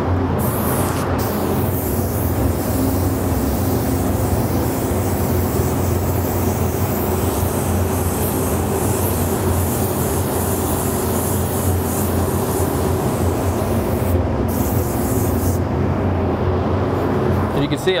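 Gravity-feed automotive spray gun hissing steadily as it lays down a medium wet coat of metallic white base coat. The hiss breaks off briefly near the end, resumes, then stops a couple of seconds before the end, with a steady low hum underneath.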